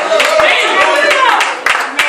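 Church congregation clapping, several claps a second, with voices calling out over it; the level dips near the end.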